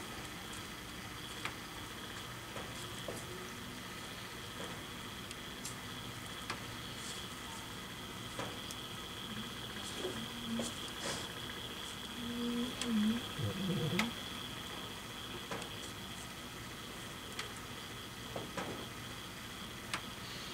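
Quiet, soft wet squishing and small clicks as a gloved hand spreads liquid epoxy over a turning glitter tumbler, over a faint steady high whine. A brief low murmur of voice comes about two-thirds of the way through.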